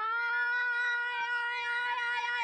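A single long, shrill held note from a flute and a singing voice together, its pitch sliding up and settling at the start and then held steady.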